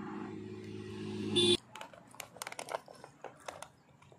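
A steady low hum that cuts off abruptly about one and a half seconds in. After it come faint scattered clicks and crinkles of a hand working rice out of a foil tray onto a banana leaf.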